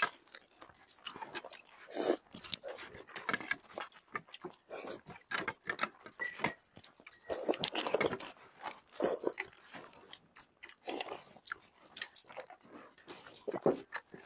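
Close eating sounds of several people eating rice and chicken curry by hand: chewing and lip-smacking, with many small irregular clicks and wet squelches of fingers working food on the plates.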